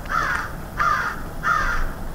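A crow cawing three times in a steady series, the calls evenly spaced about two-thirds of a second apart.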